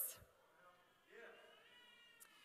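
Near silence in a large hall. About a second in, a faint, high-pitched voice starts and holds on as a drawn-out sound.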